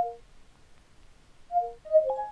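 Windows 10 Cortana voice-assistant chimes as it takes in a spoken query: a short falling two-note electronic tone at the start, the same falling two-note tone again about a second and a half in, and another short chime starting right at the end.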